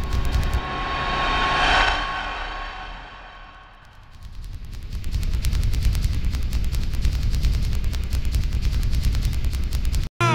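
Cinematic logo-intro sound effects: a whoosh swells to a peak about two seconds in and fades away, then a rapid, even pulsing over a deep bass rumble comes back and holds.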